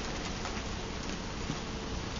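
Steady low room hiss with a faint constant hum, and one light tap about one and a half seconds in.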